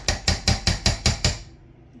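A metal spoon knocked rapidly against the rim of a ceramic slow-cooker crock, about seven quick taps in a little over a second, to shake cream cheese off the spoon.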